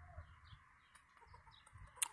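Near silence, with a few faint, short calls from an agitated squirrel scolding a person close by.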